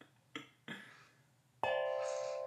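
A singing bowl, struck once near the end and ringing on with several steady overlapping tones. Two light knocks come before the strike.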